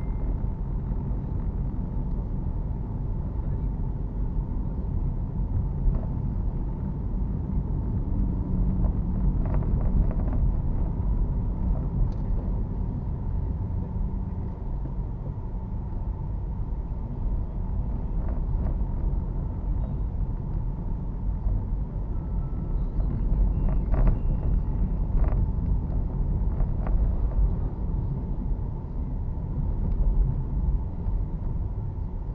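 Car driving slowly on a city street, its engine and tyre rumble heard from inside the cabin as a steady low drone, with a few short clicks and brief beeps about three-quarters of the way through.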